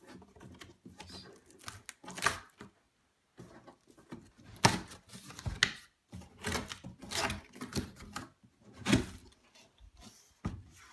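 Large cardboard box being opened by hand: irregular scraping, crackling and knocking of cardboard, with several sharper cracks as the lid and flaps come free.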